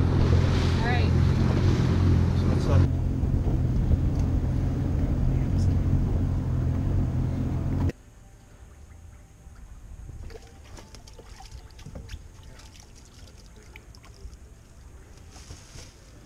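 A boat's outboard motor runs with a steady low hum, along with wind and water noise. The sound cuts off suddenly about eight seconds in, leaving a much quieter stretch with faint scattered clicks and rustles.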